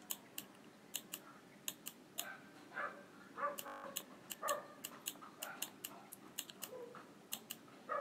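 Faint, irregular clicking of a computer pen or mouse, a few clicks a second, as handwriting is drawn on a slide. Faint short mid-pitched sounds come in between the clicks.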